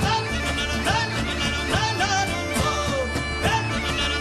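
Live folk band playing an instrumental passage: Galician bagpipe (gaita-de-foles) with its steady drone, plucked strings and percussion keeping a beat, the melody full of short sliding notes.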